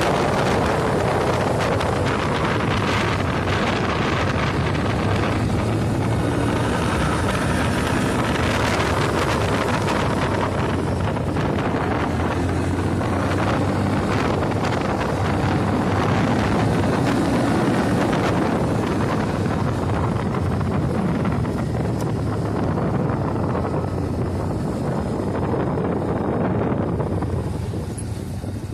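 Wind rushing over the microphone of a moving motorcycle, with the engine running steadily underneath; the noise eases a little near the end.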